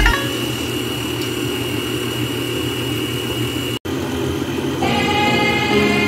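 Electric stand mixer motor running steadily with a faint high whine as its dough hook kneads bread dough, broken by a brief dropout just before four seconds in. Background music comes back in about five seconds in.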